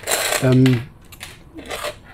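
Small metal alligator clips on test leads clinking and rattling as they are handled and unclipped, in a short bright jingle at the start, with a softer rustle near the end.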